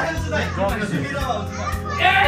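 Background music with a steady beat under the overlapping chatter of adults and children's voices.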